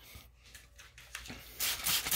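Hand-held plastic spray bottle squirting water onto a petrified wood slab: a short hiss near the end, after a second or so of quiet with faint ticks.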